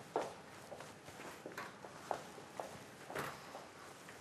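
Footsteps of a person walking at an even pace, about two steps a second, fairly quiet.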